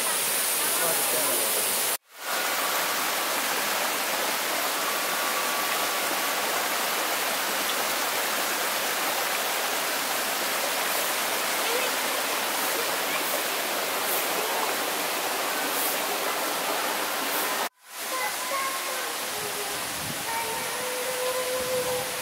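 Rushing water of a rocky mountain stream, a steady hiss of flowing water. It cuts off abruptly and returns twice, about two seconds in and again about four seconds before the end.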